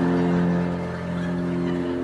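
A grand piano chord held and slowly fading.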